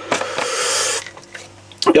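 Large plastic screw cap being twisted onto a plastic army canteen, a rubbing hiss from the threads lasting about a second.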